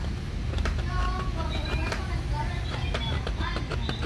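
Small metal needle file scraping in short strokes inside the plastic hub bore of a fan blade, enlarging the hole for the shaft. A steady low rumble and faint voices sit underneath.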